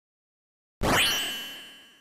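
Intro sound effect: a single bright ding just under a second in, with a metallic ring that fades away over about a second.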